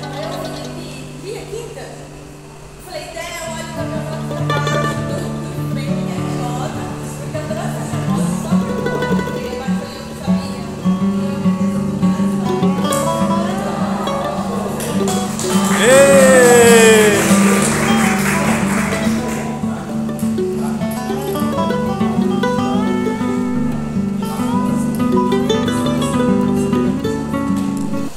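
Background music that carries on steadily, with a brief voice rising over it a little past halfway.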